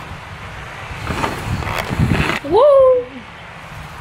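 A low rumbling noise lasting about a second, then a woman's short wordless vocal sound about two and a half seconds in, rising and then falling in pitch.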